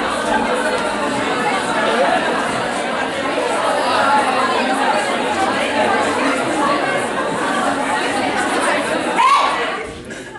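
Many voices of an a cappella vocal group sounding at once in a dense, busy mix that echoes in the hall. About nine seconds in, one voice gives a loud rising whoop, then the voices stop together right at the end.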